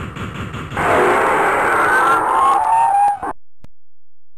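Steam locomotive sound: rhythmic chuffing, then about a second in a loud hiss with squealing brakes that fall in pitch as the engine comes to a stop. It cuts off suddenly near the end.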